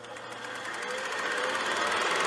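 Rapid, even mechanical clatter fading in and growing steadily louder, an end-card sound effect.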